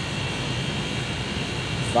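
Steady mechanical background hum: a low rumble with a faint, steady high whine.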